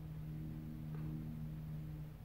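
A faint, steady low hum.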